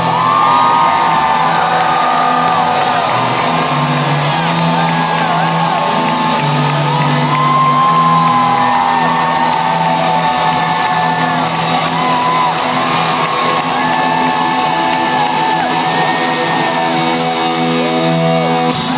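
Live rock band playing loudly, with electric guitars, bass and drums, recorded from the crowd. Sustained bass notes change every second or two under bending melody lines.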